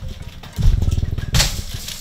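A child jumping rope barefoot: dull thuds of her landings on a rug-covered floor and the rope striking the floor, starting about half a second in and repeating a little faster than once a second.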